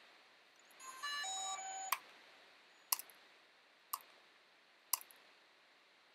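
DJI Mavic Pro drone's power-on chime: a short run of electronic beeps stepping in pitch, then four sharp clicks about a second apart.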